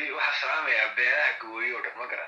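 Only speech: a person talking.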